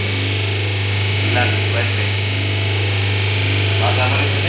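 A steady low electric hum from a running paper-plate making machine, with faint voices over it.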